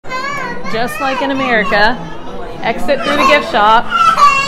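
Several children's high-pitched voices chattering and calling out, with quick swoops in pitch and hardly a pause.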